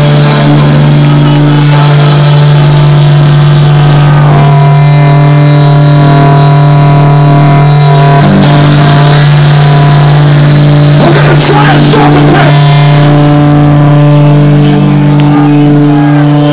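A live hardcore band's amplified electric guitars and bass hold a loud, steady distorted drone with sustained ringing tones above it. The sound is overloaded in the recording, and a brief noisy burst comes about eleven seconds in.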